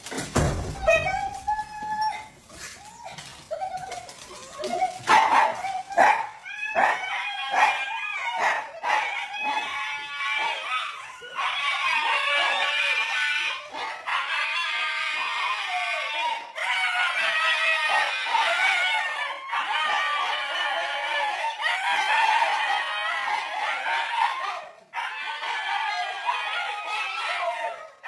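A group of dogs, a husky among them, vocalising excitedly together. There are short yips and barks at first, and from about ten seconds in a long, overlapping high-pitched howling chorus that breaks off and starts again every few seconds.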